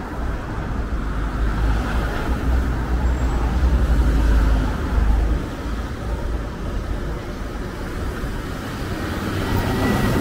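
Street traffic: motor vehicles passing on a city road, with a heavy low rumble through roughly the first half. A large truck passes close by near the end.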